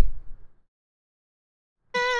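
Mostly dead silence. The tail of a spoken word fades out in the first half-second, and right at the end a pitched tone starts with its pitch wobbling several times a second: playback of a harmony note given a warble in the RipX pitch editor.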